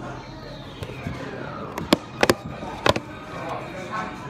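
A handful of sharp, loud knocks and clicks from about two to three seconds in, right at the microphone, from a hand handling a cardboard fried-chicken bucket. Restaurant chatter runs underneath.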